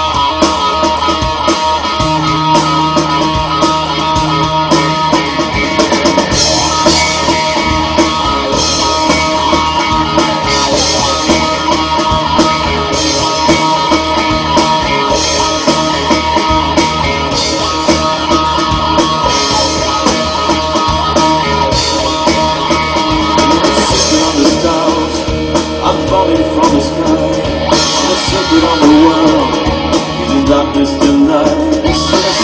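A live rock band playing loudly: electric guitar, bass guitar and drum kit, with a lead vocal.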